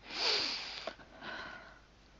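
A person breathing close to the microphone: a loud sniff-like breath through the nose, then a second, softer breath about a second later.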